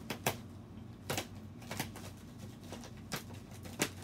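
A USPS Priority Mail mailing bag being ripped open by hand: a series of short, sharp tearing crackles, about six of them, irregularly spaced.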